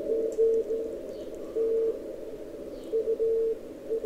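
Weak Morse code (CW) signal on the 40-metre amateur band, received on the Shared Apex Loop array through an Elecraft K3: a keyed tone of dots and dashes near 500 Hz over steady band noise, heard through a narrow CW filter.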